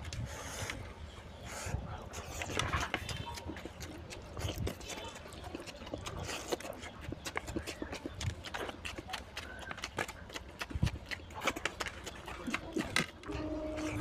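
Close-miked eating sounds of a person chewing mutton curry and rice, with many irregular mouth clicks and smacks.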